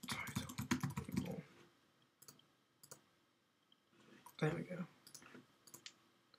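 Computer keyboard typing in a quick run of keystrokes for about a second and a half, then a few single key or mouse clicks spaced out after it. About four and a half seconds in there is a short, low murmur of a voice.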